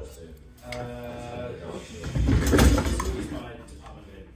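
Handling noise as the camera is moved and the saxophone is picked up: rubbing and knocks, loudest in a heavy bump about two to three seconds in.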